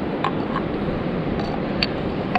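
Large whelk shells clicking against each other as they are shifted in the hands, four or five light sharp clicks over a steady background rush.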